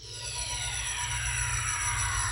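Synthesized opening theme starting up: several tones slide slowly downward in pitch together over a steady low drone, swelling in over the first half second.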